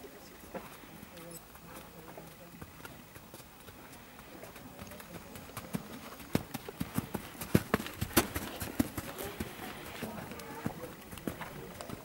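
A horse's hoofbeats on a sand arena, a run of sharp, evenly spaced footfalls at about three a second that grow loudest about six to ten seconds in as the horse passes close by, then fade.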